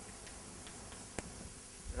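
Chalk ticking against a blackboard as an equation is written: a few faint, sharp taps, the clearest a little past a second in.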